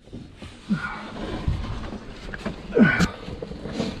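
Rustling, scraping and handling noises of a caver moving in a narrow rock passage, with short vocal sounds about one and three seconds in and a sharp knock about three seconds in.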